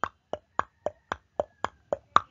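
A ticking timer sound effect: sharp, evenly spaced ticks, about four a second, alternating between a higher and a lower tick like a tick-tock.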